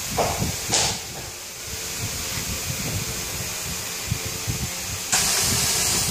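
Compressed air hissing from the pneumatic clamps of a UPVC profile welding machine. A short puff comes about a second in. A loud, steady hiss starts suddenly near the end as the pressure plates close down on the profile.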